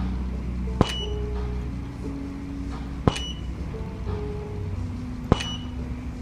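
A camera shutter firing three times, about two seconds apart: sharp clicks, each with a brief high ring. Soft background music plays throughout.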